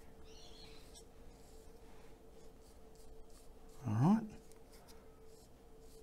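Faint scratchy strokes of a flat paintbrush dragging acrylic paint across a canvas, under a faint steady hum.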